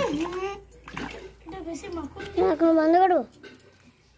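People talking, with the loudest, high-pitched stretch of speech in the second half; it falls quiet near the end.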